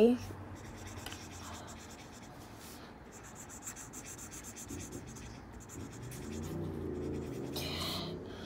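Felt-tip marker scribbling back and forth on lined notebook paper as a drawing is coloured in: a faint, uneven scratchy rubbing.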